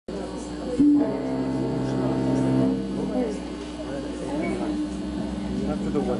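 Amplified cello holding one bowed note for about two seconds, then voices murmuring.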